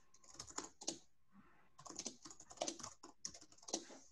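Typing on a computer keyboard: quick runs of key clicks in two bursts, the second and longer one starting nearly a second after the first ends.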